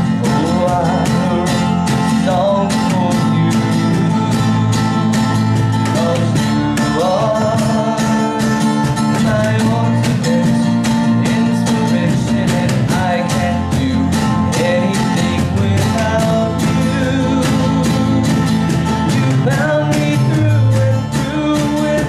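A small acoustic band playing a song: strummed acoustic guitar, bass guitar and a steady cajon beat, with a man singing lead.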